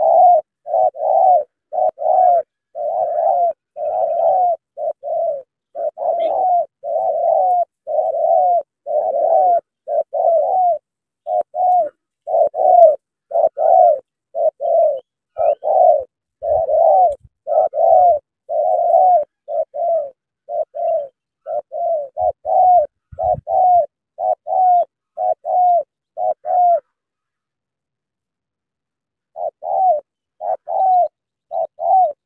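Spotted dove cooing in a long run of short coos, about two a second. The coos stop a few seconds before the end, then start again.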